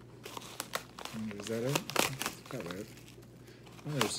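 Plastic bubble wrap and a padded mailer crinkling as the wrapping is pulled out by hand, in short irregular rustles that are loudest around the middle.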